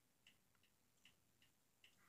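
Near silence: room tone with a faint, quick ticking, a few ticks a second.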